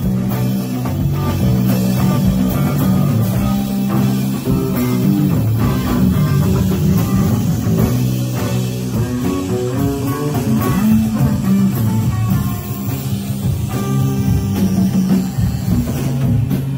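A live band plays a loud rock-style instrumental passage: electric guitar over a drum kit, carried by a heavy, steady bass line.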